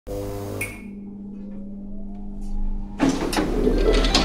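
Sound effects for an animated title graphic: a low steady hum with a tone slowly rising in pitch, then a sudden loud hit about three seconds in, followed by clicking, clinking texture as music begins.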